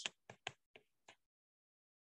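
About five light, sharp taps of a stylus on an iPad's glass screen while handwriting a word, all within the first second or so.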